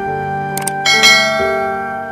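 Soft piano-like background music with a sound effect laid over it: two quick clicks about half a second in, then a bright bell ding about a second in that rings on and fades.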